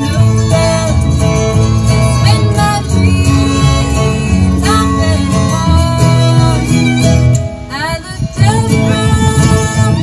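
Live bluegrass string band playing: fiddle, lap-played slide guitar, mandolin, acoustic guitar and upright bass, with some sliding notes. The music briefly drops in level about eight seconds in.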